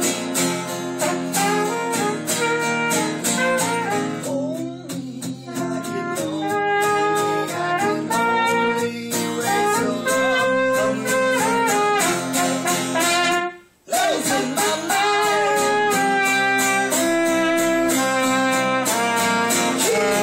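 Trumpet playing a sustained melody over a strummed acoustic guitar. About two-thirds of the way through, both stop for a moment, then come back in together.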